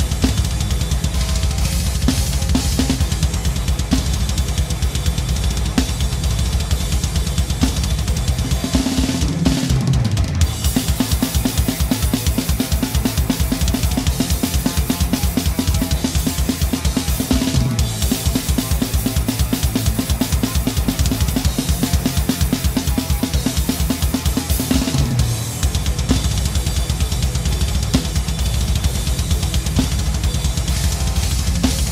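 Acoustic drum kit with Paiste cymbals played at full volume: bass drum, snare and crashing cymbals. From about nine seconds in until about twenty-five seconds in, the bass drum keeps up a fast, even run of strokes.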